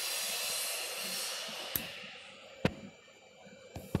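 A steady hiss fades away over the first two or three seconds, then a few sharp clicks follow, the last two close together near the end, from switches and buttons being worked on a press control panel.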